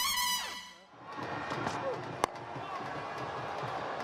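The end of the intro music, which falls away in a sweep, then steady stadium crowd noise. About two seconds in comes a single sharp crack of a cricket bat striking the ball for a shot whipped away to the boundary.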